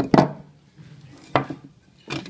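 Metal rafter square knocking against a timber rafter offcut as it is picked up and set down on the edge for marking: two sharp knocks, the first right at the start and the second about a second and a half in.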